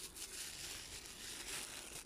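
Plastic shopping bag rustling and crinkling faintly as groceries are rummaged through.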